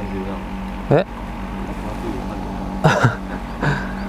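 Bow-mounted electric trolling motor on a bass boat running with a steady hum. A short startled voice cuts in about a second in, and laughter comes near the end.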